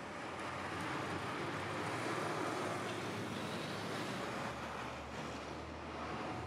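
Street traffic: cars passing, a steady rush of tyre and engine noise that swells and eases a little near the end.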